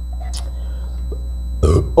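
A man belches once, short and loud, near the end after a swig of canned beer, going straight into a voiced 'oh'.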